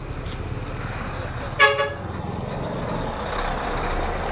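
A vehicle horn gives one short honk about one and a half seconds in, over the steady rumble of road traffic.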